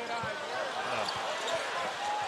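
Basketball arena ambience: a basketball being dribbled on the hardwood court, with the crowd murmuring underneath.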